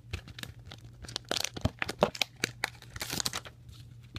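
Packaging being handled and torn open, irregular crinkling and tearing with sharper crackles about a second in and again near three seconds.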